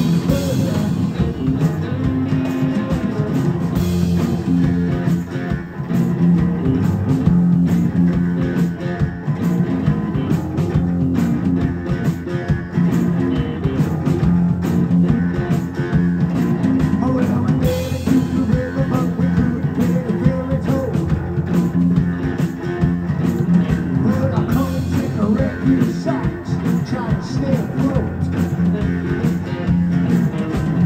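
A blues-rock trio playing live: electric guitar, electric bass and drum kit.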